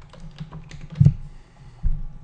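Scattered light clicks and taps of a computer keyboard and mouse, with two louder thuds, one about a second in and one near the end.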